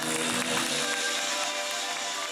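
Live band music with sustained pitched notes and no speech.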